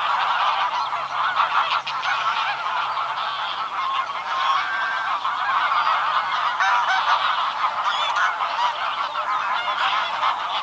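A flock of greylag geese calling together: many overlapping honks in a dense, steady chorus with no pause.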